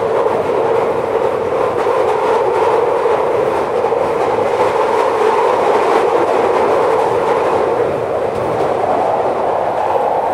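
London Underground Victoria line train (2009 Stock) running at speed through a tunnel, heard from inside the carriage: loud, steady running noise of the wheels on the rails.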